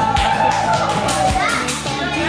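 Thai pop song: a high voice holds one long note over steady drum hits and bass, letting go about a second and a half in.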